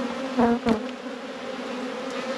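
Honeybees buzzing in a steady hum from an opened hive, the frames' top bars covered with bees, with two short louder sounds about half a second in.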